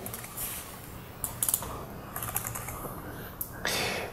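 Typing on a computer keyboard: a run of irregular key clicks as text is edited, with a short rush of noise near the end.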